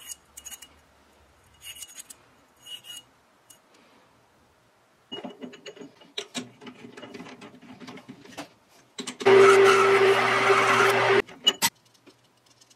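Light metal clicks and taps from the lathe's chuck key and the steel workpiece being handled and clamped in the chuck, then a small metal lathe running with a steady hum and whir for about two seconds near the end, cutting off abruptly.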